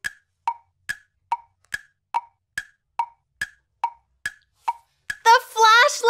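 A tick-tock sound effect of short wood-block clicks, alternating between a higher and a lower note at about two and a half a second, used as a waiting cue while an answer is awaited. A woman's voice begins near the end.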